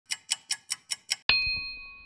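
Clock-tick sound effect: six quick, even ticks at about five a second, then a single bright bell-like ding that rings and fades. The ding is the loudest part.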